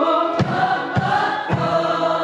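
Many voices singing held notes together as a call-and-response vocal exercise, the pitches moving in steps. A beat is marked about every half second, and a low steady note comes in near the end.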